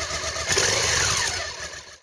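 A motorcycle engine revving, swelling with a rising pitch about half a second in and then fading away near the end.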